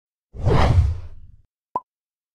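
Logo-animation sound effect: a whoosh with a low rumble underneath that fades out, then a single short pop about a second later.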